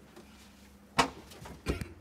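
Cab door of a Lift Hero CPD30 electric forklift being pulled shut, a single sharp bang about a second in, followed by a shorter rattle of knocks as it latches.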